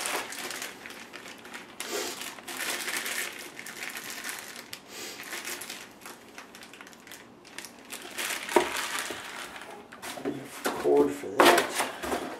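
Plastic bag around a laptop's AC adapter and cord crinkling as it is handled, with cardboard packaging rustling and shifting. There is a sharp knock about eight and a half seconds in, and louder rustling near the end.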